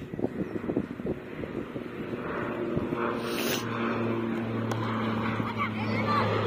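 A low, steady engine hum sets in about halfway through and keeps on, growing a little louder.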